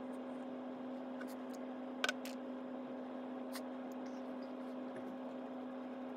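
Steady low hum with faint hiss in a small room, and a short sharp click about two seconds in.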